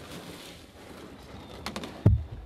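Quiet open-air ambience at the water's edge, with a few light clicks and knocks near the end as a person climbs into a canoe.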